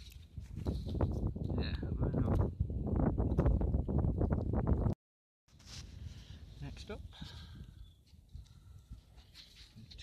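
Close rustling and knocking handling noise on the microphone among dry stubble, loud and rumbling for about five seconds. It stops abruptly at a cut, followed by quieter rustling with a few clicks.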